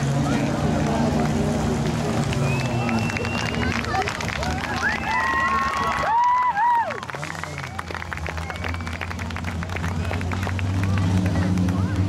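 Modified production speedway car's engine running as it laps a dirt track. The engine tone fades about six seconds in and builds again, over crowd noise.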